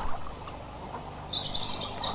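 A small bird twittering in quick high chirps from a little after halfway, over a steady low background hiss.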